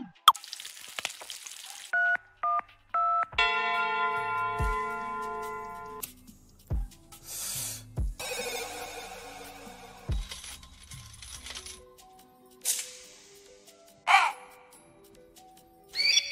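Sound-effect one-shots from a drill drum kit's Fx folder, played one after another: a whoosh, short synth blips, a held synth chord over deep booms, noise sweeps, and a sliding tone near the end. Each lasts a second or two.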